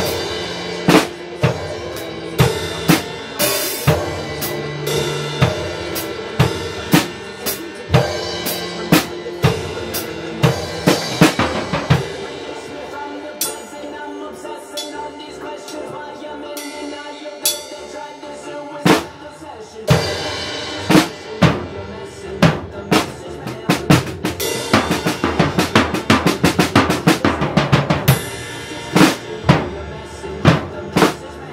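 Acoustic drum kit played along with a recorded song: kick, snare and Zildjian cymbals over the track's pitched backing music. The strikes thin out about halfway through, then build into a busy passage with a run of rapid hits near the end.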